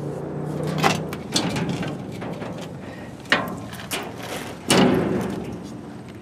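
Sharp metal knocks and clunks of a Northwest 80-D crane's steel clutch levers and linkage being worked by hand, four or so separate knocks, the loudest about five seconds in.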